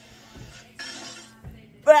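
Cartoon audio from a television: faint music and a short burst of noise about a second in, like a sound effect. Near the end a person exclaims 'wow'.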